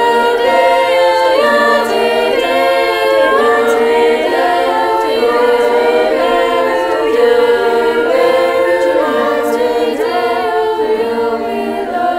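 High school choir singing unaccompanied, several voice parts holding chords that change about every second.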